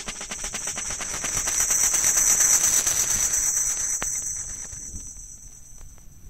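Dub reggae track near its end: the bass and drums have dropped out, leaving a high, rapid percussion pattern that swells and then fades away.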